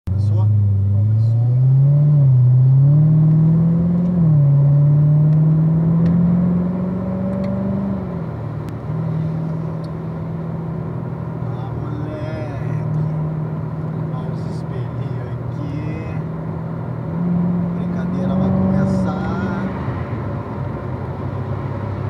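Corvette Z06's V8 heard from inside the car, pulling away gently and short-shifting up through the gears at low revs. Its pitch climbs and falls back with each shift in the first several seconds, holds steady while cruising, and rises and drops once more near the end.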